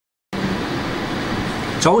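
Steady background hiss with a faint low hum, like room ventilation noise, starting after a moment of silence. A man's voice begins just before the end.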